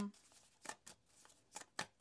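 A tarot deck being shuffled by hand: a few short, crisp snaps of cards against the deck, faint, with the clearest ones in the second half.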